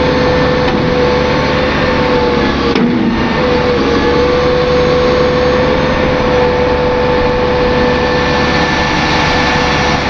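Gradall XL4100 excavator's engine running steadily while its hydraulics work the telescoping boom, with a steady whine over the engine's rumble. The whine breaks off briefly about three seconds in, then carries on.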